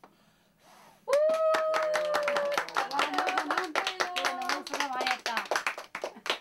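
Applause from several people, starting suddenly about a second in, with a long drawn-out cheer from a voice over it, as birthday candles are blown out.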